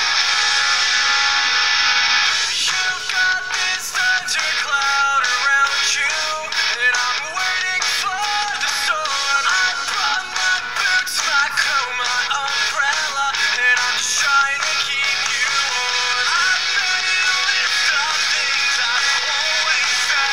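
Pop song with a sung vocal line, played continuously; it sounds thin, with almost no bass.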